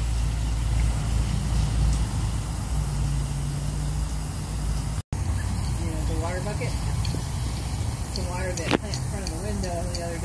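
Water from a garden hose pouring into a hanging flower basket, with a low rumble of wind on the microphone. After a sudden break about halfway through, the water sound is gone and faint voices are heard a few times.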